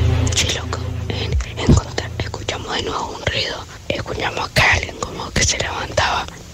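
A music bed ends about a second and a half in, followed by a voice whispering.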